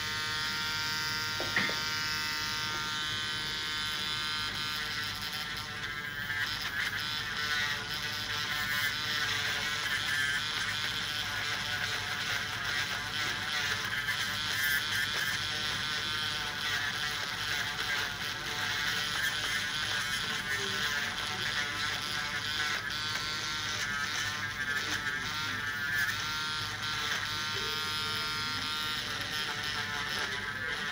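Podiatry electric nail drill running continuously, a buzzing whine that wavers in pitch as its burr grinds down extremely thick fungal toenails.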